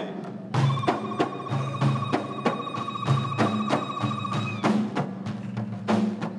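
Ahidous frame drums (allun) beaten together by a line of performers in a steady rhythm of about four strikes a second. A single long, high, slightly wavering vocal call is held over the drums from about half a second in until near the five-second mark, then breaks off.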